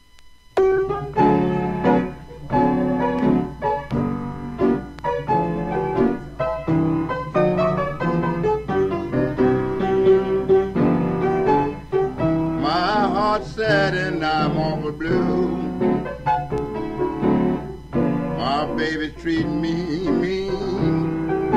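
Solo blues piano starts a number about half a second in, after a moment of near silence, playing an intro in a steady rhythm. A short wordless voice with vibrato joins briefly twice in the second half.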